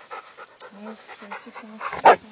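Dogs at rough play: quick, breathy panting, with a run of short low vocal sounds from the dogs in the middle.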